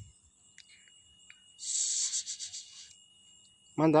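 Crickets chirring steadily, with a scraping, rustling noise lasting about a second that starts about a second and a half in.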